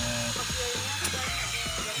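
Cordless drill running as its bit bores an oil hole through a motorcycle clutch basket, under background music with a steady bass line.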